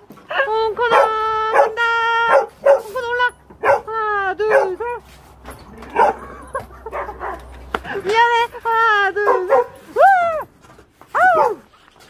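A mixed-breed dog howling: a long steady howl of about two seconds, a string of shorter howls, a lull, then more howls, the last ones arching up and falling in pitch.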